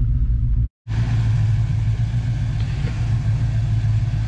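A 1983 Dodge Ramcharger's engine idling with a steady low rumble. The sound breaks off to silence for a moment a little under a second in, then resumes unchanged.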